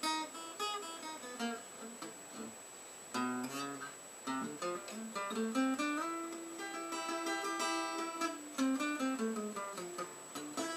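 Twangy parlor-size acoustic guitar, a vintage Montclair with an aftermarket bridge, played by hand: a melodic line of single picked notes mixed with a few strummed chords.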